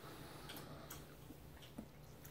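Near silence: faint room tone with a few soft clicks, the sharpest one near the end.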